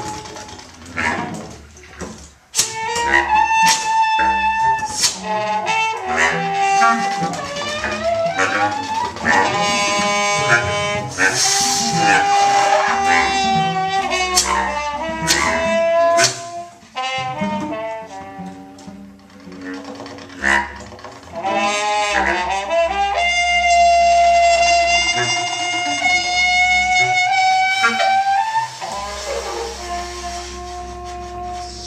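Live acoustic quartet of tenor saxophone, trumpet, bass clarinet and cello playing together. Short clicking, stabbing notes mix with long held tones, and one long held note stands out over the others near the end.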